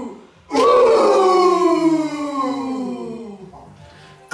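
Several voices shouting one long, drawn-out "hou" war cry in a haka-style chant. It starts about half a second in and slides down in pitch as it fades away over about three seconds.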